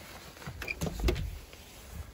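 A door knob turned and its latch clicking, then the door pulled open, with a few sharp clicks and a dull thump about a second in.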